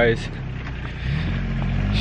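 Low, steady hum of a vehicle engine running, with a slight rise in pitch about a second in.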